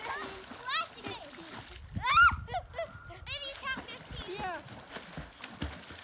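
Water splashing as a swimmer kicks at the surface, mixed with children's high-pitched cries and shouts. The loudest cry, about two seconds in, rises and then falls.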